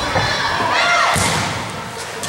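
Broomball play on an indoor ice rink: a sharp thump at the start and another just past a second in, from brooms, ball or boards, with players shouting and cheering between them in the echoing arena.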